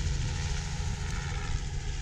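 Wind rumbling on the microphone over small waves washing up a sandy beach: a steady, uneven low rumble.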